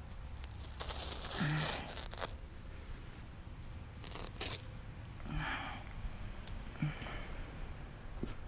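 Utility knife cutting black weed-barrier fabric, with the fabric rustling and crinkling as it is folded and pulled by hand, in a few short bursts.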